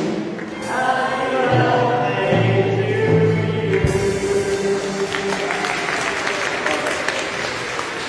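Church music with a group of voices singing long held notes.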